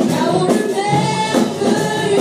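Live praise-and-worship band: several singers sing together into microphones over a drum kit, bass guitar and keyboard, with a steady drum beat.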